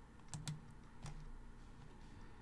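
Faint computer mouse clicks: two quick clicks close together about a third of a second in, then a fainter single click about a second in.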